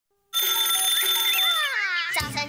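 Alarm-clock bell ringing as a wake-up sound effect, starting about a third of a second in and holding steady, with falling gliding tones under it in the second half.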